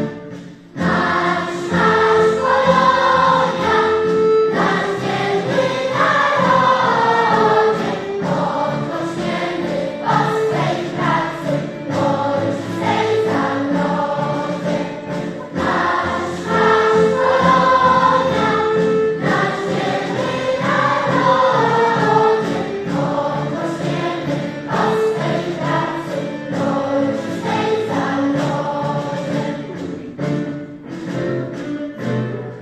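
A large mixed choir of adults and children singing, starting after a brief pause about a second in. The same sung phrase comes round again about halfway through.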